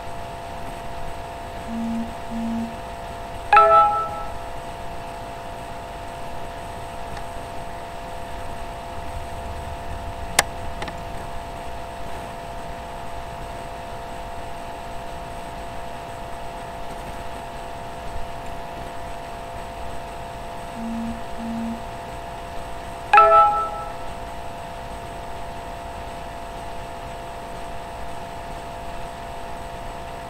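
A chime rings twice, about twenty seconds apart, each time shortly after two short low beeps, over a steady hum. A single sharp click comes about ten seconds in.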